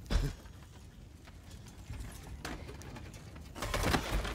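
Film sound effects of rubble and debris knocking and clattering over a low rumble, with a sharp knock near the start and a louder clatter near the end.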